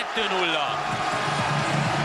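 A male football commentator's voice, held and rising over steady stadium crowd noise as a shot goes in.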